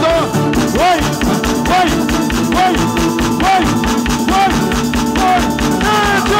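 Live konpa band playing at full volume: a steady, even low beat under bass guitar, congas and keyboards, with melodic lines bending over the top.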